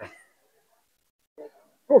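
Only speech: the end of a man's word at the start, a pause with almost nothing heard, and a short exclamation "O" just before the end.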